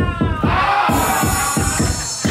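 Loud ballroom dance track with a fast, steady kick-drum beat under a sustained pitched vocal or synth line. A bright hiss comes in about halfway through.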